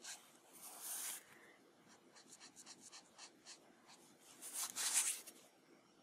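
Copic alcohol markers stroking across paper: a run of short scratchy strokes, with two longer, louder swishes, one about a second in and one near five seconds.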